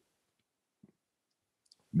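A pause in speech, near silence apart from one faint brief click a little before the middle, with a voice starting up again right at the end.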